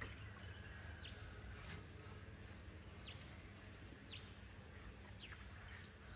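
Faint outdoor ambience: a bird gives short, high chirps that sweep downward in pitch, repeated about once a second, over a steady low rumble.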